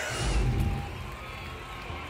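Video transition sound effect: a whoosh with a low boom that fades out within about a second, followed by faint room noise.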